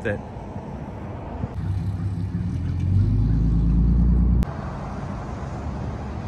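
A road vehicle's engine rumble building up nearby and rising in pitch as it accelerates, loudest for a second or so, then cut off suddenly about four and a half seconds in.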